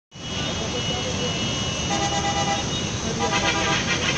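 Heavy road traffic heard from high above: a steady wash of engine and tyre noise, with vehicle horns honking in two held blasts, one about two seconds in and another a little after three seconds.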